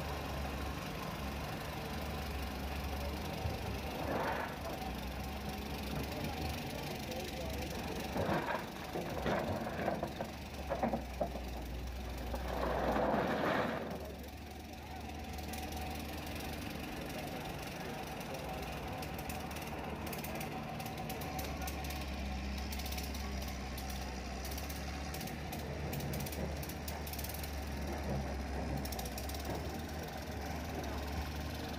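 Caterpillar excavator's diesel engine running with a steady low hum that drops away for several seconds just after the middle. A cluster of louder, irregular sounds comes about a third of the way in.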